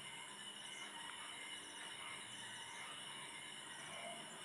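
Faint steady room tone: a low hiss with a few thin, steady high-pitched tones.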